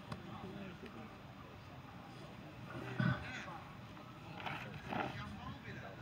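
Faint, distant voices of players calling out on a football pitch, with short calls about three seconds in and again near five seconds.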